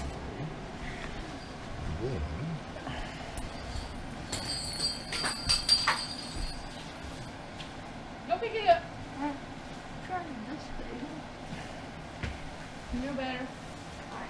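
Faint, indistinct voices in a small room, with occasional soft handling noises of fabric as camouflage trousers are folded and rolled on the floor.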